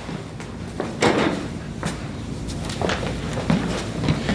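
A few scattered knocks and scuffs from people moving about and handling gear, about four in all, over a steady low room hum.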